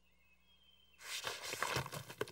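Cartoon sound effect of a round door being wrenched off a tin can: a rough scraping, rattling noise that starts about a second in, after near silence.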